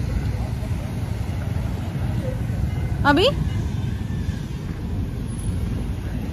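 Steady low rumble of wind buffeting a phone's microphone outdoors, with one short word from a woman about three seconds in.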